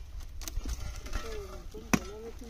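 A hoe striking into dry earth, digging: two blows about a second and a half apart, the second much louder.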